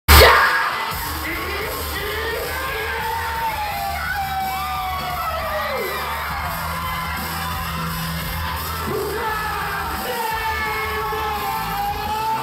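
Hip-hop backing track playing loud through a venue's sound system, with a heavy bass line. Voices shout and whoop over it, and there is a sharp hit right at the start.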